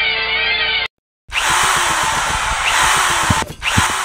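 A short music sting that stops sharply just under a second in, then, after a brief gap, a power drill running loudly with its pitch rising and falling as it works.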